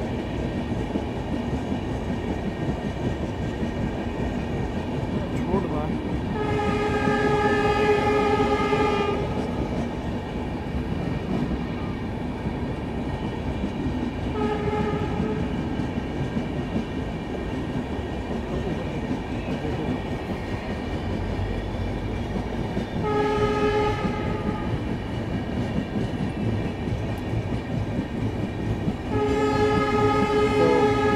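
Steady running rumble and clatter of a moving passenger train, heard from an open coach window. The locomotive horn sounds four times: a long blast of about three seconds, a short one in the middle, a second-long one later, and another near the end.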